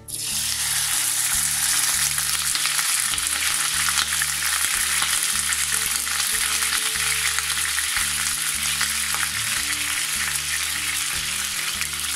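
A whole raw pork ham searing in a frying pan of very hot fat, sizzling loudly and steadily. The sizzle starts suddenly as the meat goes in. The pan is hot enough to sear fast, which the cook means to seal the meat's surface.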